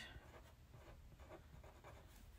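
Faint scratching of a pen writing on a paper planner sticker, with short strokes and near silence around them.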